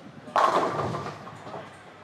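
Bowling pins crashing as a ball strikes the rack: a sudden loud crash about a third of a second in that dies away over about a second in the echoing hall.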